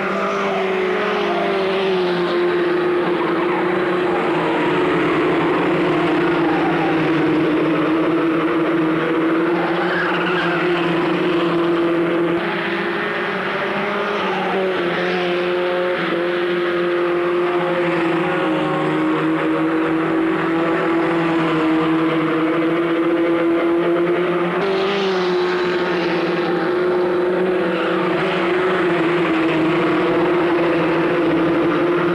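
Formula Ford 1600 single-seater racing cars, each with a Ford Kent 1.6-litre four-cylinder engine, running at racing speed as the field goes by. A continuous engine drone, fairly steady in pitch.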